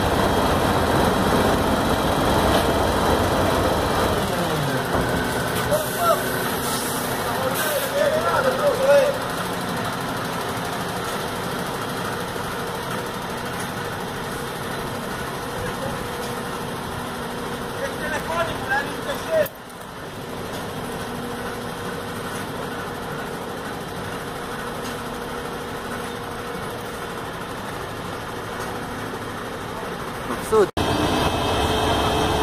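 FAUN Rotopress garbage truck standing and running, its engine and rotating drum making a steady mechanical sound with a pitch that falls about four seconds in. A few short squeaks come through in the first half, and the sound settles to a steadier, quieter run after a brief dip just before the twenty-second mark.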